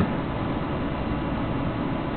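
Steady, even rushing noise in the flight simulator room, with no distinct events.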